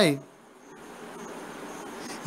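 A man's speaking voice breaks off just after the start, leaving a soft, steady hiss that grows slightly louder through the pause.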